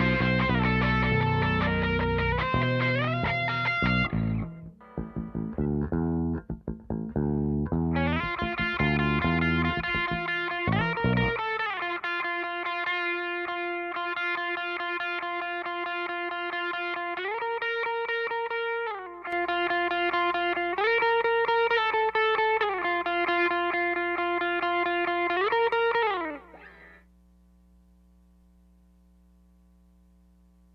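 Electric bass playing low notes for the first eleven seconds or so, under a sustained, distorted lead tone that slides up and down between long held notes. The lead carries on alone after the bass stops and cuts off about 26 seconds in, leaving a faint amplifier hum.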